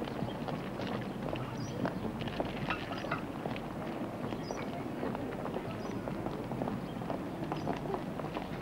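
Busy pavement crowd: many irregular footsteps and heel clicks on paving stones, with the indistinct voices of passers-by.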